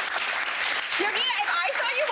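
Studio audience applauding, with women's voices laughing and exclaiming over the clapping.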